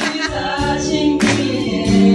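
A group of women singing a song together, one of them into a handheld microphone, holding long notes.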